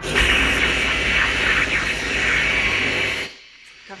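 Film sound effect of a welding torch sealing a door shut: a loud, steady hiss with a low rumble underneath that cuts off abruptly a little past three seconds in.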